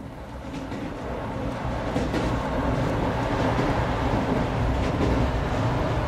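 A train running along the track, a steady rumble with a few sharp clicks, fading in over the first second or two.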